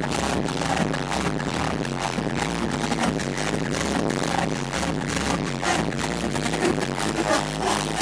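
Electronic dance music played loud over a nightclub sound system, with a steady driving beat.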